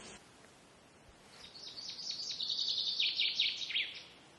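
A songbird singing one song: a fast run of short repeated notes that swells in loudness and cuts off near the end.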